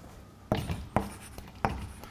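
Chalk writing on a chalkboard: three sharp taps and scratches, the first about half a second in and the others following about half a second apart.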